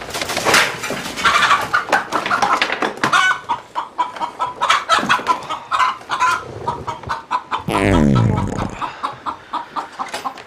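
Chickens clucking and squawking in a rapid flurry of short calls. About eight seconds in, a loud sound sweeps steeply down in pitch.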